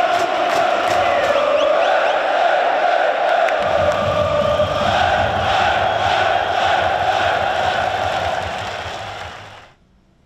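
Football stadium crowd chanting in unison, a loud sustained wall of many voices; a deeper low layer joins about four seconds in, and the chant fades out near the end.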